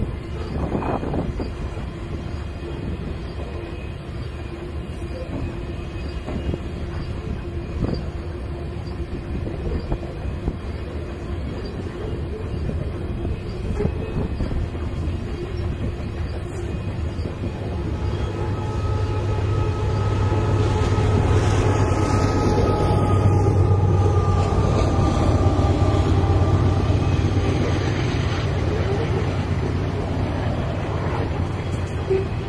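Loaded freight train of covered hopper cars rolling by, a steady clatter of wheels on rail. Partway through, a diesel locomotive running as a mid-train distributed power unit draws near and passes: the rumble grows louder, with a strong low engine hum and steady tones, then eases slightly near the end.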